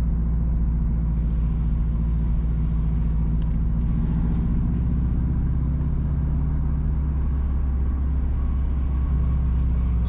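A car driving along a paved road: steady engine hum and tyre noise at an even pace.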